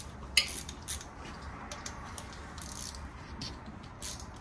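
Light metallic clinks and taps of hand tools on metal parts of an engine being worked on, scattered irregularly, the sharpest about half a second in.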